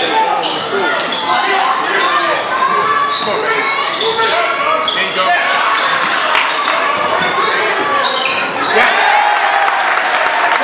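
Basketball dribbled on a hardwood gym floor, its bounces knocking amid the chatter of a crowd in a large, echoing gym. Near the end the crowd noise swells.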